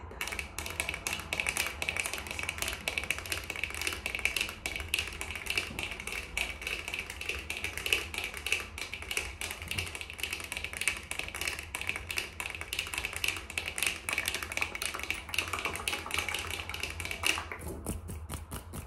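Fast, random tapping with fingernails and finger pads right at the microphone: a dense stream of sharp clicks, many each second. Near the end the tapping changes abruptly to sparser clicks.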